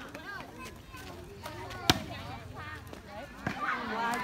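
A volleyball being struck, one sharp smack about two seconds in and a weaker knock near the end, over continual chatter and calls from spectators and players.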